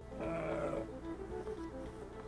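A merino sheep bleats once, briefly, in the first second, over soft background music that carries on throughout.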